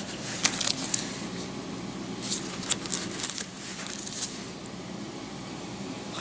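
Plastic-wrapped stickers crinkling and crackling as they are handled, in two clusters of quick crackles about a second long and a lone one later, over a steady low hum.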